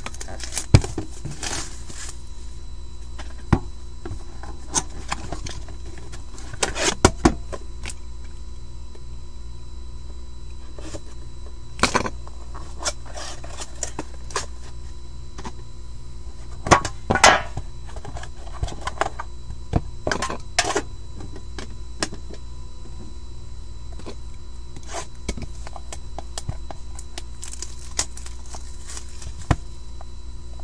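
A trading-card box and its tin case being handled and opened: scattered clicks, taps and short rustles, with a few louder clusters, over a steady background hum.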